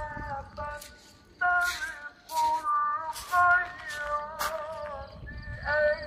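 A singing voice in long held notes that bend and step from pitch to pitch, heard as a melody with gaps of about half a second between phrases.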